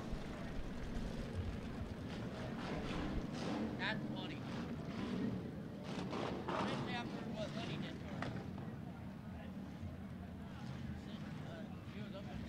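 Faint, steady low drone of a field of IMCA Hobby Stock race cars running around a dirt oval, with faint voices in the background.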